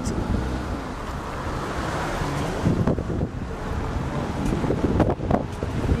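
Steady wind noise on the microphone mixed with the road noise of a moving car.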